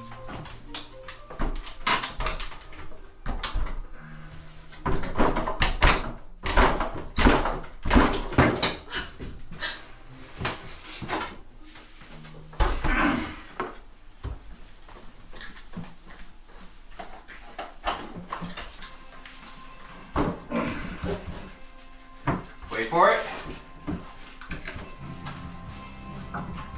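Old wooden kitchen cabinets being pried and pulled off a wall: repeated cracks, bangs and thuds of breaking and falling wood, irregular throughout.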